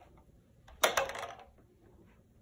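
A hollow plastic tomato container knocked about by a cat: one sharp clatter a little under a second in, with a second click right after, fading within half a second.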